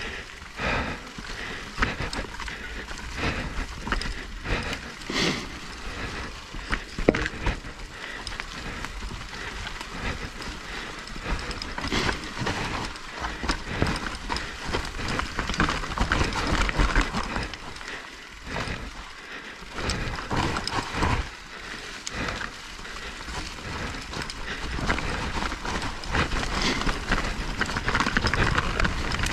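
Mountain bike descending a dirt and leaf-litter trail: knobby tyres rolling and crunching over the ground, with the bike rattling and knocking irregularly over roots and rocks.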